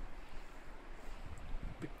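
Wind buffeting the microphone: a low rumbling hiss with no clear pitch.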